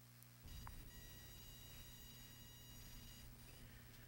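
Near silence: a faint steady electrical hum and hiss with a few thin high tones, coming in about half a second in.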